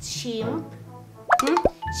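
Cartoon-style sound effect over background music: a short blip that sweeps sharply up in pitch and then quickly drops, about a second and a half in.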